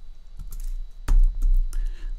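A few keystrokes on a computer keyboard, the Enter key among them, with a dull low thump about a second in that is the loudest sound.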